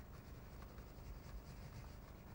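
Faint scratching of a crayon scribbled back and forth over paper.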